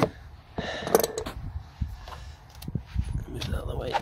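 Scattered clicks and knocks of a socket wrench being worked on an engine block's coolant drain plug.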